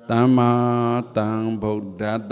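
A Buddhist monk's low male voice intoning or chanting: one drawn-out syllable of about a second on a fairly steady pitch, then two shorter ones.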